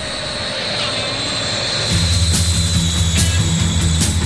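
A steady rushing whoosh with a slowly falling whine, a jet-like transition sound effect between songs. About halfway in, a rock track starts with driving bass and drums.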